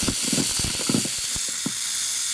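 MIG welding arc on aluminum from a Hobart IronMan 230 with a spool gun, the gun pulled along the joint: a steady hiss broken by irregular crackles and pops, several a second. It is close to the smooth spray-transfer sound the welder is tuning for, which he calls "the sound I'm looking for".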